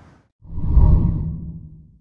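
A low whoosh transition sound effect leading into the end graphic. It swells quickly about half a second in, then fades over the next second and a half before cutting off.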